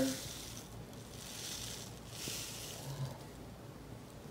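Fine coloured sand trickling from a small plastic packet into a glass dish of water: a soft hiss that comes in three spells.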